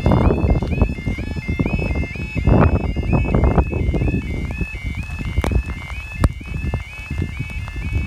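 Level crossing audible warning alarm sounding its repeating two-tone yodel warble, with low rumbling noise underneath and two sharp knocks partway through.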